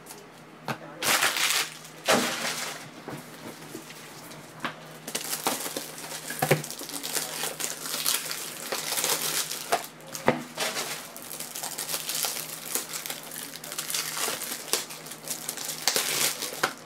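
Foil trading-card pack wrappers and plastic card holders being handled, crinkling and rustling with scattered light clicks. There are short loud bursts about a second and two seconds in, and a long stretch of dense crinkling from about five seconds in until near the end.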